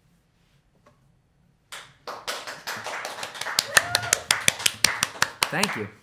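A small audience clapping at the end of a song. It starts about two seconds in after a short silence, with single claps clearly heard, and dies away near the end.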